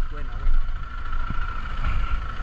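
Zontes GK 350 motorcycle engine idling steadily.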